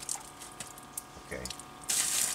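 Stainless-steel filter bowl being taken off a water cartridge filter housing: faint metallic clinks and dripping water, with a brief hiss of water near the end.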